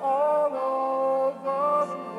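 Music: a sung song moving through three long held notes, one after another.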